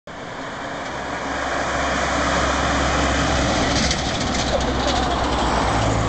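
Recovery truck with a car on its back driving along the road past the camera; the engine and tyre noise swell over the first couple of seconds and then hold steady.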